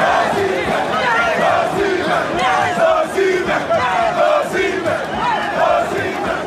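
A group of men, the Nigerian footballers, chanting and singing their victory song together, many voices overlapping in a loud, steady celebration.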